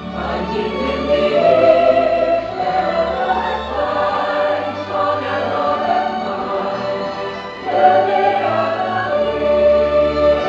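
Stage-show music: a choir singing over an orchestral backing, swelling louder about eight seconds in.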